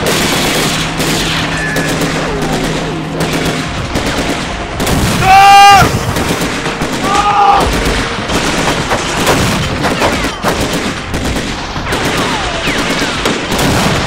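Rapid AK-type rifle gunfire, shot after shot without a break. A man shouts loudly about five seconds in and again briefly about seven seconds in.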